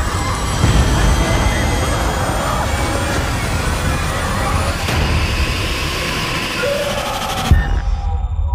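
Horror trailer soundtrack: a dense, loud rumbling build of score and sound design that ends in a sudden hit about seven and a half seconds in, leaving only a low rumble.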